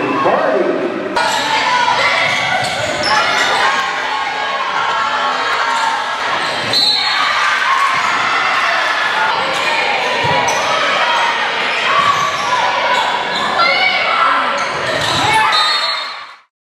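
Indoor volleyball play echoing in a gym: the ball being struck and hitting the floor, sneakers squeaking on the hardwood, and spectators and players shouting and cheering.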